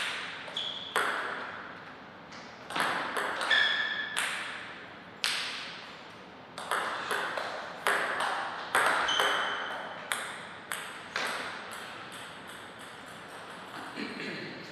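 Table tennis ball clicking back and forth between the rubber paddles and the table in two short rallies, each a quick run of sharp clicks, with pauses between them.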